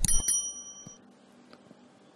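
A quick click, then a bright, high bell ding that rings out and fades within about a second. It is the notification-bell sound effect of a subscribe-button animation.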